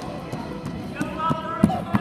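A few echoing thumps on a hardwood gym floor in the second half, from balls bouncing and feet running, with students' voices around them.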